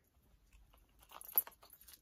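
Faint rustling and scattered small clicks from movement close to the microphone. One sharper tick comes near the middle, after a near-silent first second.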